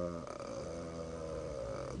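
A man's drawn-out hesitation sound, a held "euh" at a steady pitch that slowly fades, between phrases of speech.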